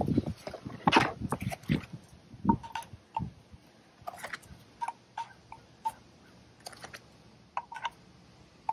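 Miller 9545 injector leak-off test vials clicking and knocking as they are lifted out of their foam-lined case and pushed onto the fuel injector return nipples. There are a dozen or so short clicks, some with a brief ringing ping, and the loudest come in the first second.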